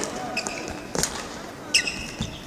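Badminton rally: a racket strikes the shuttlecock with a sharp crack about a second in, and players' shoes squeak on the court as they move, with a squeal near the end.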